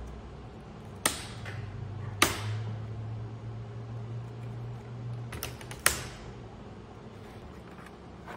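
Sharp plastic snaps and clicks as a black plastic cover is worked loose from an HP TouchSmart 300 all-in-one computer's chassis: one about a second in, the loudest just after two seconds, and a quick cluster of snaps near six seconds.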